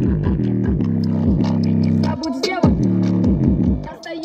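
Bass-boosted music played loudly through a JBL portable Bluetooth speaker in its low-frequency mode, deep bass notes sliding down in pitch again and again under sharp, ticking percussion.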